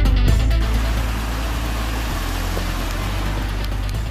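Background music with a steady low bass, and over it, from about half a second in, the steady rushing noise of a police patrol car driving past.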